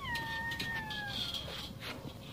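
Chain swing squeaking as it swings after a push: one long squeal that slowly falls in pitch and fades out about a second and a half in, followed by a few light clicks near the end.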